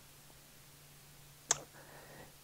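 Quiet room tone with a steady low hum, broken about one and a half seconds in by a single sharp click.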